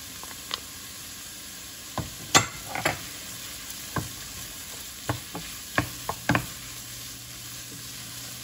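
Vegetables, bacon and sausage sizzling in a stainless steel pot while a wooden spoon stirs, with about ten sharp knocks and clinks of the spoon against the pot and a small glass dish as tomato paste is scraped in. The loudest knock comes about two and a half seconds in.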